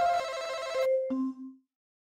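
Short electronic jingle of three held, ringtone-like tones stepping down in pitch, ending about one and a half seconds in.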